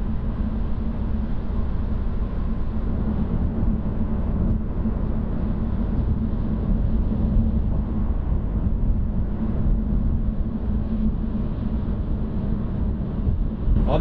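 Steady road and tyre noise heard inside a Tesla's cabin at highway speed on a wet, snowy road: an even low rumble with a fainter hiss above it.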